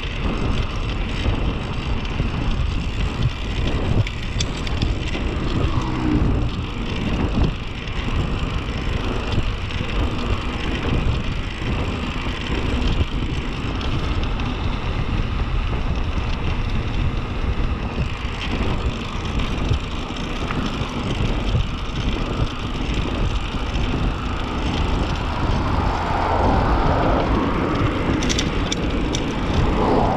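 Wind rushing over the microphone of a handlebar-mounted camera on a fast bicycle descent, mixed with tyre noise on asphalt. The noise gusts unevenly and swells louder near the end, with a few sharp clicks.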